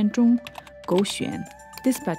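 A few computer keyboard keystrokes as a short entry is typed, heard under narration and background music.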